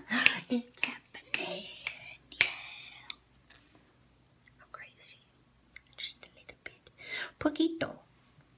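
A woman's voice: laughter and soft, half-whispered words in the first three seconds, a quiet stretch, then more soft talk near the end.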